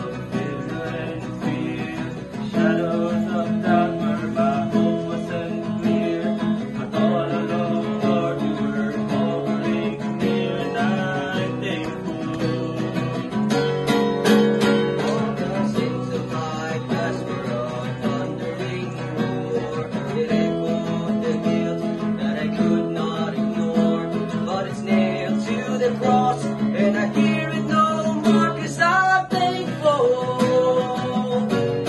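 Acoustic guitar strumming the accompaniment of a worship song, with a group of voices singing along at times.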